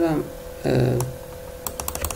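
A quick run of computer keyboard keystrokes near the end, about half a dozen sharp clicks in under half a second.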